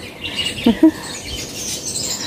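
Small birds chirping and twittering in the background, with a brief short vocal sound from a woman under a second in.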